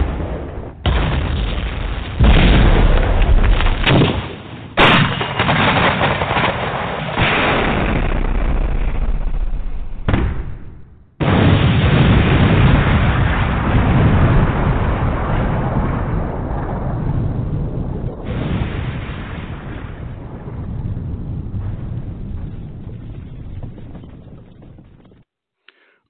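Sound effect of bombs exploding: a series of loud blasts, each starting suddenly and rumbling on for several seconds, the last one dying away near the end.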